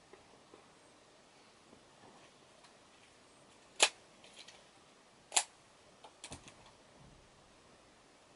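Two sharp clicks about a second and a half apart, then a quick run of softer clicks, against a quiet room.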